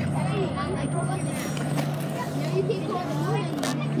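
A bus engine running with a steady low drone, heard from inside the passenger cabin, with passengers' voices talking over it.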